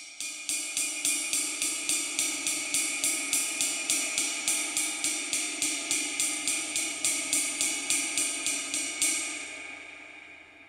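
Istanbul Agop 22-inch Traditional Jazz ride cymbal played quietly with a drumstick in a steady ride pattern, about three or four strokes a second. The cymbal keeps vibrating a lot and builds up a ringing wash under the strokes, which makes it hard to hold at a quiet volume. The strokes stop near the end and the ring fades away.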